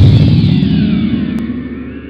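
Intro sound effect: a deep rumble under gliding high tones, fading away steadily.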